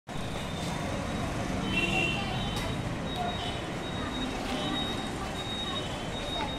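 Street background noise: a steady hum of traffic, with faint, high children's voices now and then.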